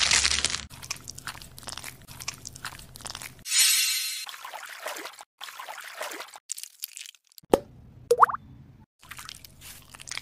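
Close-miked ASMR handling of face-mask products: crackly crunching with quick sticky clicks and squishes, broken by abrupt cuts, with a brief squeak near the end.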